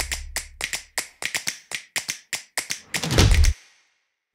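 Title-card transition sound effect: a run of quick, uneven clicking taps, about five a second, over a low boom that fades within the first second and comes back briefly near the end before the sound cuts off.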